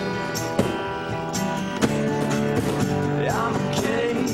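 Acoustic guitars strumming and picking chords over a hand-played cajon beat: a small acoustic band playing live.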